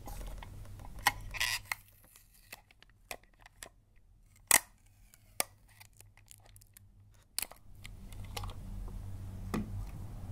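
A roll of clear sticky tape being handled and picked at with fingernails over a paper-wrapped gift box: scattered sharp clicks and ticks, the loudest about four and a half seconds in. Wrapping paper rustles near the start and again near the end.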